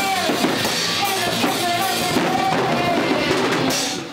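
A metalcore band playing: drum kit, electric guitars and bass under a female clean vocal that holds long sung notes.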